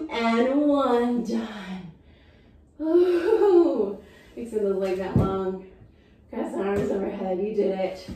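A woman's wordless voiced sounds, four drawn-out phrases that glide up and down in pitch, as she ends a set of pelvic tilts and lowers to the mat.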